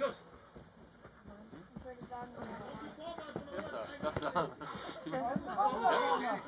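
People's voices talking and calling out, quieter for the first second or so and louder toward the end, with a few short knocks among them.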